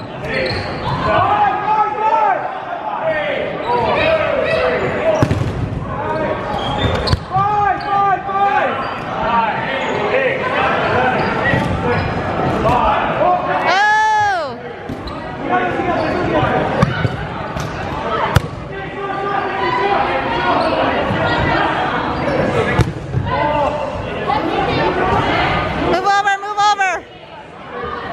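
Players and spectators calling out and cheering in an echoing gym, with dodgeballs bouncing and thudding on the hardwood floor. One long drawn-out call rises and falls about halfway through.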